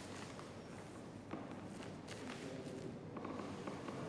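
Ballet dancers' feet shuffling and stepping softly on a stage floor as a man lifts his partner onto his shoulder, with a few faint knocks.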